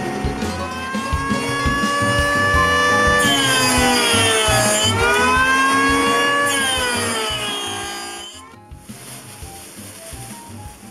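Small belt sander motor running, with sanding hiss as wood is pressed to the belt; the motor's pitch sags under the load about three to five seconds in and recovers, then it falls steadily as the motor winds down and stops about eight seconds in.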